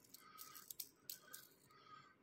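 Near silence with a few faint, light clicks from a small diecast toy car being handled in the fingers.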